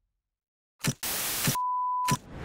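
A broadcast ident sound effect: silence, then a sudden click and half a second of television static hiss, cut off by a steady test-tone beep that runs to the end.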